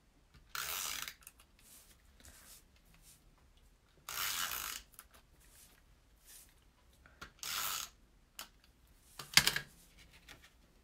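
Tape runner (SNAIL adhesive dispenser) drawn across the back of a cardstock panel in three short strokes of about half a second each, a rasping whirr as the adhesive is laid down. Near the end, a sharp plastic clack, the loudest sound, as the runner is put down on the table.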